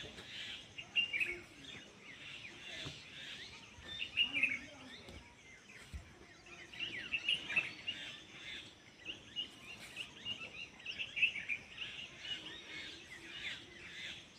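Small birds chirping and twittering in irregular bursts of quick, high calls, fairly faint, with a low background hum of outdoor noise.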